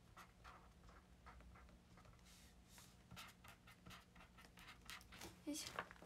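Faint scratching of a pen on paper in short, irregular strokes: drawing by hand.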